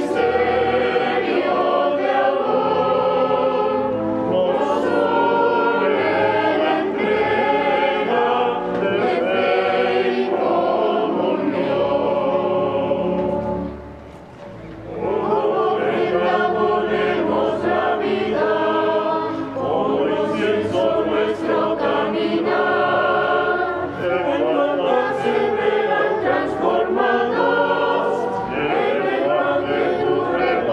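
Church choir singing a hymn during the offertory, with a brief break about halfway through before the singing resumes.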